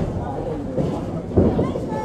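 Candlepin bowling alley din: a low rumble of balls rolling on the lanes under background talk, with a sharp knock about a second and a half in.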